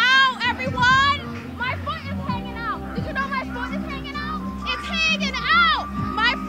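Women's high-pitched excited squeals and whoops over background music.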